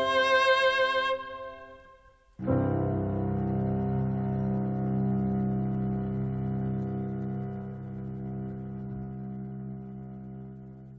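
Classical music for cello and piano, likely the close of a piece. A bright chord rings and fades, then about two and a half seconds in a long, low chord is held and slowly dies away.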